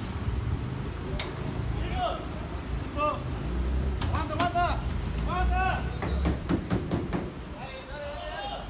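Outdoor street ambience: indistinct voices calling out in short bursts over a steady low rumble, with a few sharp clicks near the middle and later on.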